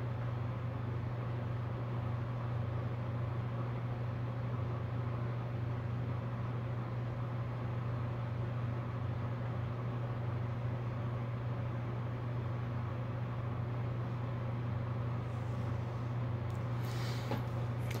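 Electric fan running with a steady low hum.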